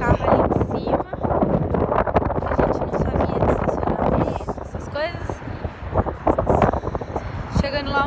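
Gusting wind buffeting the phone's microphone, a rumbling roar that stays loud throughout, with a woman's voice breaking through it now and then.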